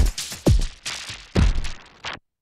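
90s electronic dance track playing: a deep kick drum that drops in pitch on every beat, about two a second, under a bright cymbal wash. One beat drops out a little past halfway before a last kick, and the high end thins out toward the end.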